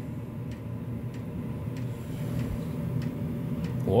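A 2500 W pure sine wave inverter humming steadily under a load of about 1900 W from an electric kettle, with a few faint ticks.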